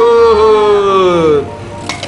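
A voice shouting a long drawn-out "Go", held for over a second and sliding slowly down in pitch, as a spinning-top launch call. A single sharp click follows near the end.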